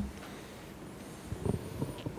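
Quiet room tone, with a few faint short low thuds or murmurs in the second half.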